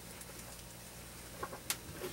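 Quiet room tone with faint handling of three-strand rope as its strands are tucked by hand, then a short soft sound and a sharp click near the end.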